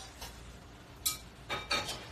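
A few short clinks of cutlery and dishes: a small one near the start, one about a second in and a cluster of two near the end.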